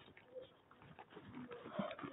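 Faint low bird cooing, two short calls about a second apart.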